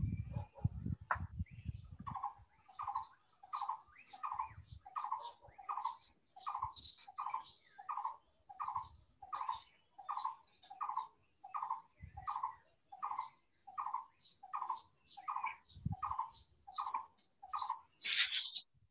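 A short call, likely a bird's, repeated steadily about three times every two seconds. Low rumbling noise fills the first two seconds.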